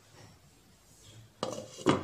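A glass pan lid with a steel rim being set onto a frying pan: two clattering knocks close together, the second the louder, with a brief metallic ring.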